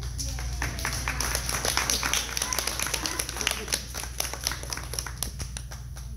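Audience clapping, a round of applause from a modest group that begins just after the start, is thickest in the middle and thins out near the end.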